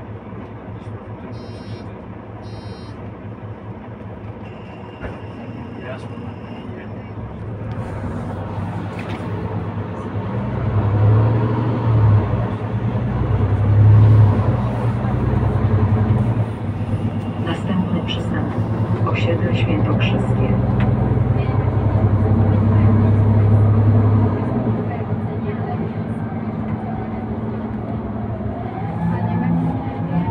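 Mercedes-Benz O530K Citaro C2 city bus with a ZF EcoLife automatic gearbox heard from inside: the low drone of engine and drivetrain swells as the bus gathers speed about ten seconds in, dips briefly twice, holds strong for several seconds and eases off a few seconds before the end.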